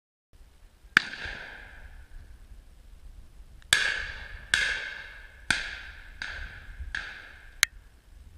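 A string of about seven shotgun shots at uneven intervals of roughly a second, each fading away briefly, over the rumble of wind on the microphone.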